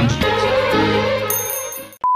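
Show theme music over the closing title card, with a bright chime ringing near the end as the music fades out.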